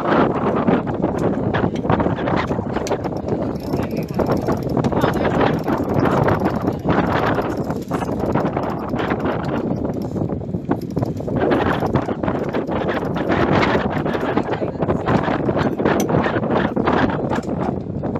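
Indistinct voices of people on a sailboat's deck over wind buffeting the microphone, with irregular flapping and knocking while the sail is hoisted. The level swells and eases every few seconds.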